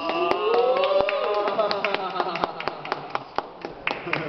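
A voice holding a long drawn-out note that rises and then falls over about two seconds, with scattered sharp claps and taps throughout.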